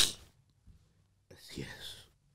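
A man close to tears draws a loud, sharp breath at the start. After about a second of quiet comes a breathy, half-whispered sob.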